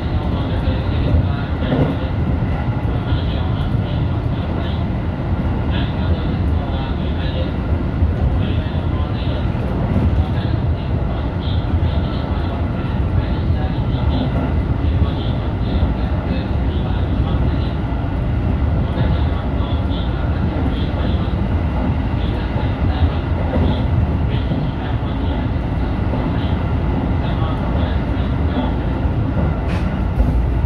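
JR Central 313 series electric train running along the track, heard from the driver's cab: a steady rumble of wheels on rail with a faint steady hum above it.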